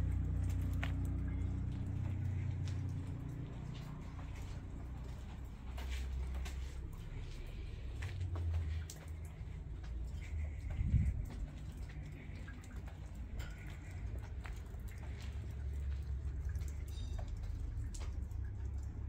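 Low, uneven outdoor rumble with scattered faint clicks and a louder low bump about eleven seconds in.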